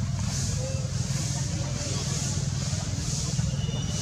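Outdoor forest ambience: a high insect drone swelling and fading about once a second, over a steady low rumble.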